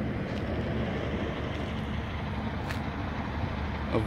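A vehicle engine idling steadily, a low even hum with nothing sudden over it.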